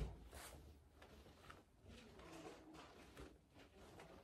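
Near silence: faint soft rustles of a foam roller and sweatpants shifting on an exercise mat, with a brief soft thump right at the start.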